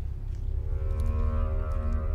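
Ominous horror film score: a deep, steady low drone, joined about half a second in by a long held note.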